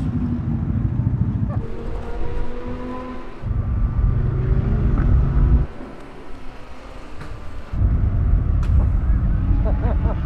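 Golf cart riding across the paddock: a low rumble of the ride and wind on the microphone, which drops away and comes back abruptly several times.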